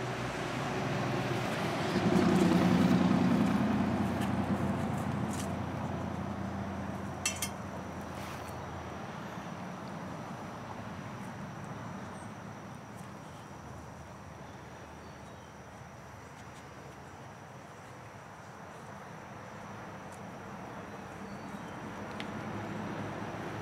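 A low, steady engine sound that swells over the first two seconds, is loudest two to four seconds in, then slowly fades away over the next dozen seconds, as of a motor vehicle passing by. A short sharp click about seven seconds in.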